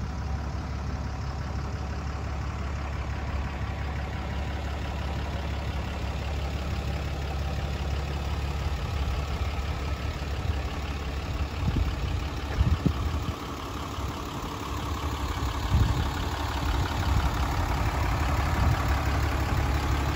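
A vehicle engine idling steadily, a continuous low rumble with a few brief louder bumps past the middle.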